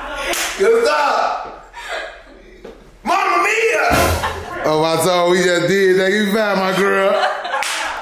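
A high five: one sharp hand slap near the start, then laughing voices. About four seconds in comes another sharp crack, followed by a long, wavering sung note.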